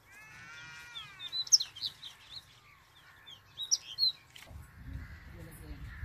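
Birds chirping in short, bright bursts, opening with a drawn-out call that falls in pitch. A low rumble comes in about four and a half seconds in.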